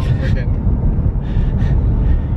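A car driving, heard from inside the cabin: a loud, steady low rumble of road and engine noise.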